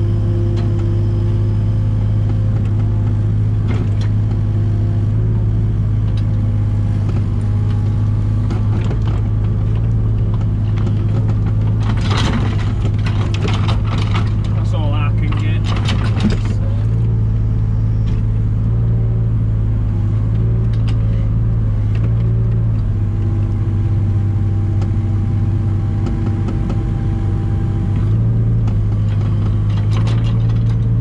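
Diesel engine of a 3-tonne JCB mini excavator running steadily under hydraulic load, heard from inside the cab. From about twelve to seventeen seconds in, the bucket scrapes and clatters through stony soil and rubble.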